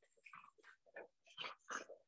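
Near silence broken by faint, quick, uneven puffs and scuffs from a person doing fast mountain climbers with gliders under the feet.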